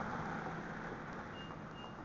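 A steady motor-vehicle engine drone with road noise, slowly fading, and two short high-pitched beeps close together in the second second.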